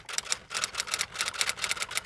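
A rapid run of sharp clicks, about seven or eight a second: a clicking sound effect laid under an animated on-screen caption.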